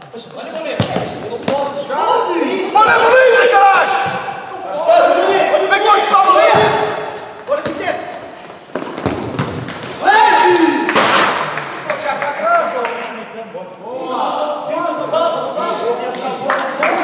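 Futsal players shouting to each other in a sports hall, with thuds of the ball being kicked and bouncing on the court floor. The voices are indistinct and run through most of it, loudest in a few calls that rise and fall.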